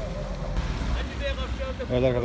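Faint background voices of people talking, over a low steady rumble.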